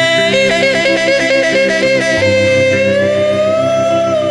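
A woman yodelling over two strummed acoustic guitars. Her voice flips rapidly between two notes, about five times a second, then settles into one long held note that slides slowly upward.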